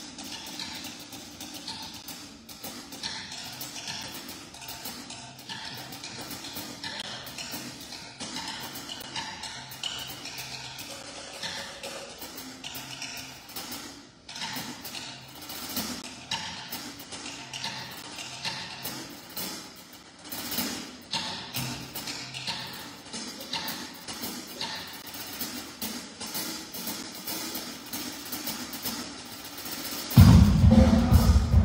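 Soft live percussion: a drum kit and cymbals played quietly, with many light taps and clicks in a loose rhythm over a faint low sustained tone.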